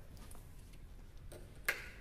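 Quiet room tone of a small classroom with a steady low hum and a few faint ticks, then a man's short spoken "Okay" near the end.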